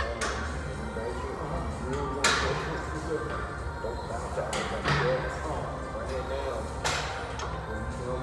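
Several sharp metallic clanks from a Smith machine barbell and its weight plates during a bench press, the loudest about two seconds in. Music plays in the background throughout.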